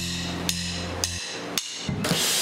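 Sharp percussive clicks from a drum kit, evenly spaced about two a second, over a held low bass note that cuts off a little past halfway.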